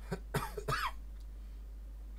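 A person coughing, three short bursts within the first second.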